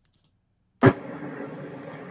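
Near silence, then a little under a second in a sudden sharp onset and the soundtrack of an amateur phone video of the sky starts playing: a steady, muffled outdoor noise with a low hum and no voices.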